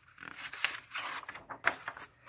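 A picture-book page being turned by hand: paper rustling and sliding, with two sharp flicks of the page about a second apart.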